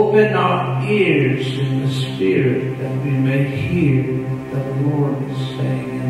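A man's voice singing a slow, wordless, chant-like line over a steady sustained chord from an electronic keyboard.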